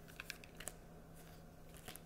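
Faint shuffling of a tarot deck in the hands: a few soft card clicks and rustles, over a steady low hum.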